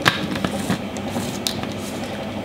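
Plastic clicks and scraping as the blade base of a personal blender is screwed onto its filled cup, with a few sharp clicks spread through.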